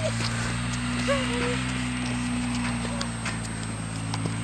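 A horse walking on a snow-dusted dirt track, its hooves giving irregular soft clops over a steady low hum. A short pitched sound comes in about a second in.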